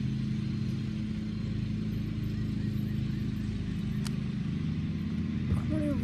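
Steady low hum of a running motor, with one sharp click about four seconds in from the utility lighter's igniter.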